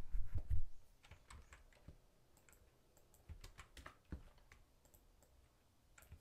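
Computer keyboard keystrokes and clicks, sparse and irregular. There are a few heavier low thumps in the first second.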